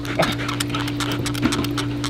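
Dog pulling on a rubber ring toy in a game of tug-of-war: many quick scuffs and clicks of the struggle over a steady low hum.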